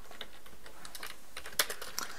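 Typing on a computer keyboard: a run of light keystroke clicks, with a louder cluster of clicks near the end.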